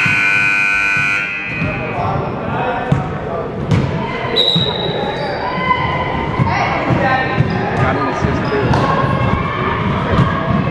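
A gym scoreboard horn sounds for just over a second, then a basketball bounces on the hardwood court among voices in the hall.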